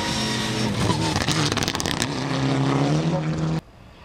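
Mitsubishi Lancer Evolution X rally car's turbocharged four-cylinder engine revving hard on a dirt stage. There is a quick run of cracks about a second in. The pitch drops at a gear change about two seconds in and then climbs again. The engine sound cuts off abruptly shortly before the end.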